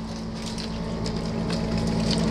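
A steady low machine hum over an even hiss, slowly growing louder.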